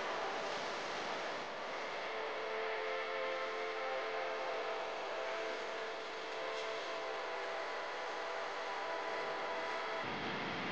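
A steady rushing noise, like wind, with faint held tones joining in about two and a half seconds in; no singing is heard.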